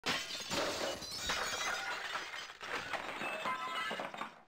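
Shattering sound effect for a logo breaking apart: a crash of brittle material breaking, then a run of pieces clinking and scattering, with a few ringing tones near the end.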